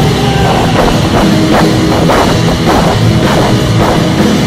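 Live rock band playing loud, electric guitars over a drum kit keeping a steady beat of about two strikes a second, with cymbals.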